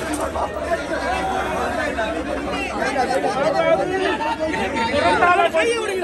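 A crowd of many people talking over one another: a steady babble of overlapping voices.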